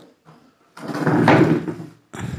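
An Ongole bull gives a rough, breathy grunt lasting about a second, beginning just under a second in after a near-silent start.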